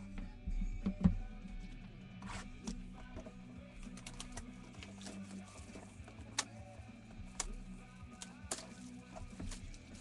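Quiet background music with scattered light clicks and taps, typical of typing or handling small objects on a desk.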